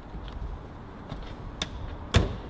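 A few faint, short knocks and clicks of handling, the clearest about a second and a half in, over a low steady background rumble.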